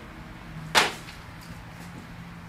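Plastic insufflation tubing swished out through the air, one short sharp whip-like swish about three-quarters of a second in, over a low steady hum.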